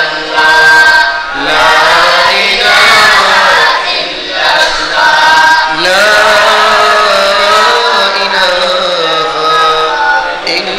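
A man's voice chanting in long, melodic, wavering held notes, in the style of a qari's devotional recitation, with short pauses for breath.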